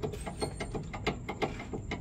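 Worn front stabilizer (sway-bar) link on a Honda Mobilio rattled back and forth by hand, giving a quick run of clacking knocks, about seven or eight a second. The rattle is play in the worn link, even though its nut is tight, and it is the source of the car's clunking over rough roads.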